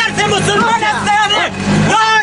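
Voices talking over a low steady hum, with a low rumble swelling near the end.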